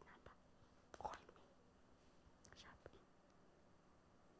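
Near silence with a woman's faint whispering, once about a second in and again a little before the three-second mark.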